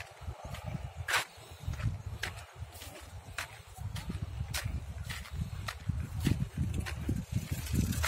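Wind rumbling in gusts on the microphone, with irregular sharp clicks about every half second.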